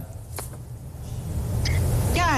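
A low rumble of background noise, growing slightly louder toward the end, with a brief click about half a second in.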